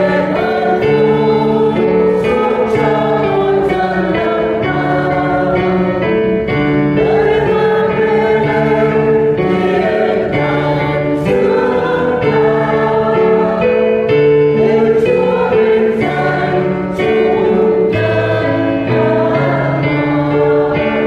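A choir singing a hymn in long, held chords.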